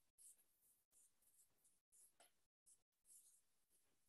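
Near silence, with a few faint, short scratches of a pen writing on a whiteboard.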